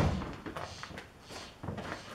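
A dull thunk at the very start, dying away, then faint scattered taps and knocks.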